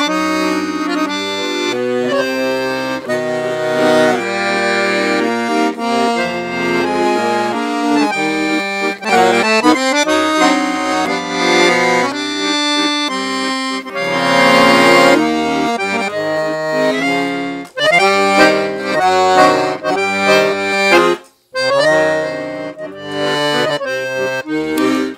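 A Titano Special 7113 piano accordion, with three sets of reeds (low, middle, high), being played. A melody and chords on the treble keys run over a changing bass-button accompaniment. The playing stops briefly about 21 seconds in, then resumes with short, rhythmic chords.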